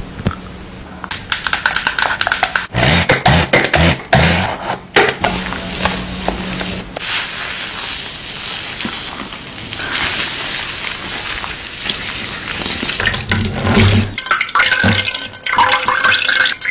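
A face being washed: hands rubbing lather on skin, then water splashing and running as the face is rinsed, a steady hiss through the middle.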